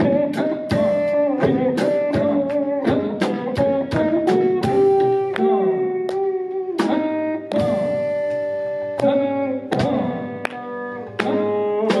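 Carnatic music in raga Panthuvarali led by a veena: a run of sharply plucked notes, each ringing on with sliding bends in pitch (gamakas).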